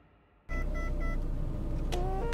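A steady low hum of a car's interior starts about half a second in, with three quick electronic beeps in a row, then a click near the end.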